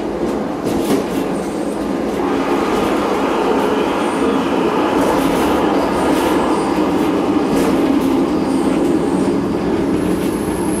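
A train running along the track, heard from the driver's cab: a steady rumble of wheels on rail with scattered short clicks, growing a little louder about two seconds in.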